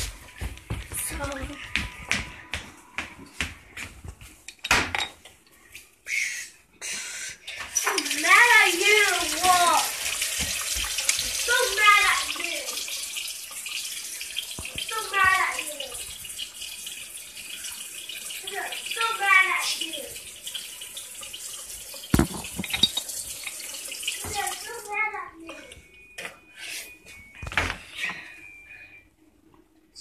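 Water tap running into a sink for about seventeen seconds, switched on about eight seconds in and cut off sharply near twenty-five seconds, during tooth brushing. A child's voice comes over the water in short wavering phrases, and a few knocks and handling noises come before the water starts.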